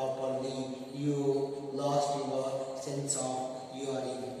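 A man's voice speaking in a drawn-out, chant-like way, holding long level pitches between pauses.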